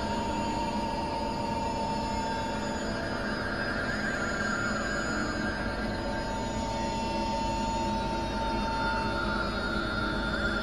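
Experimental electronic drone music from synthesizers: a dense, steady, noisy drone of many layered held tones. A high held tone fades after a couple of seconds and returns about six seconds in, over a wavering higher band.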